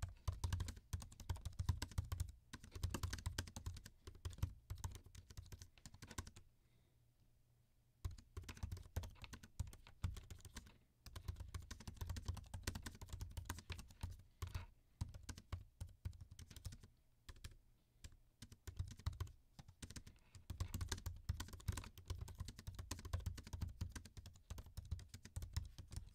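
Typing on the built-in scissor-switch keyboard of a 2021 14-inch MacBook Pro: a quick, uneven run of soft key clicks, nice and quiet, broken by a short pause about six seconds in and another around seventeen seconds.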